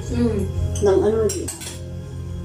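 Cutlery clinking against bowls and plates as people eat at a table, with several sharp clinks in the second half, over background music.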